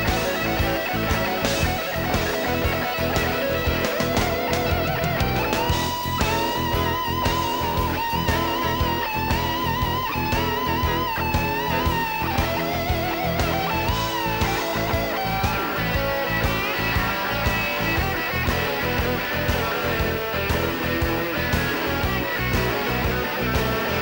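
Live blues-rock band: an electric guitar plays a lead line over drums and bass. In the middle it holds long, wavering bent notes.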